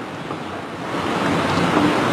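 A long, rushing breath that builds about a second in and is held steadily.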